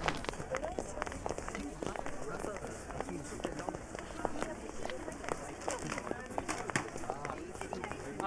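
Footsteps of a group walking across a hard floor, many irregular clicks, with faint indistinct voices of people talking.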